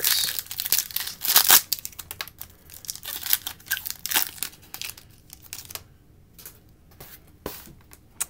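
The crimped plastic wrapper of a 2019 Bowman Chrome trading-card pack being torn open by hand, with dense crinkling and crackling that is loudest about a second and a half in. After about five seconds it thins to a few scattered clicks and rustles as the cards are taken out.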